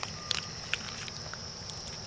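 Raccoon rummaging in a plastic bucket: a few scattered clicks and scrapes. Under them runs the steady high trill of night insects, likely crickets.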